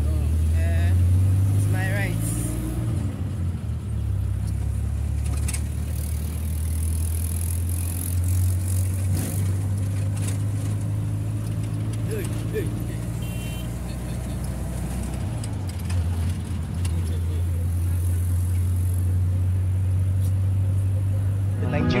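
Steady low engine and road rumble heard from inside the cabin of a moving vehicle, with faint voices in the cabin now and then.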